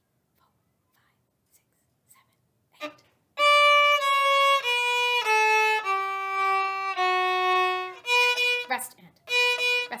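Violin bowed: after about three seconds of near-quiet with faint whispered counting, long held notes step down in pitch one after another, then shorter separated notes, several repeating the same pitch, near the end.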